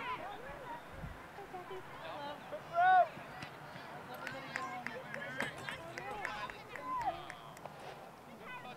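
Scattered shouts and calls from players and spectators across an outdoor soccer field, with one short, loud call about three seconds in.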